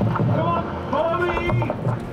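A voice shouting in two calls, the words unclear.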